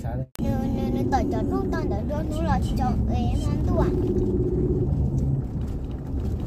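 Steady low rumble of a car driving on a paved road, heard from inside the cabin, under a person talking. The sound drops out completely for a moment about a third of a second in.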